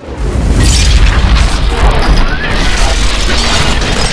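Sci-fi portal-opening sound effect: a loud, dense rumble with crackle that swells up from silence within the first half-second as the energy portal forms.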